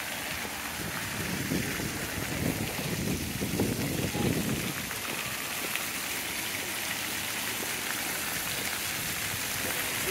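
Ground-level fountain jets spraying and splashing onto wet paving: a steady rushing hiss of water, louder and deeper for a couple of seconds about two seconds in.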